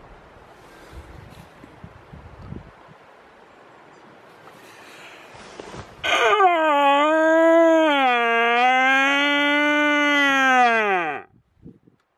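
Red deer stag roaring in the rut: one long, loud call of about five seconds, starting about six seconds in. It wavers in pitch and slides steeply down as it ends. Before it there is only a faint, even background.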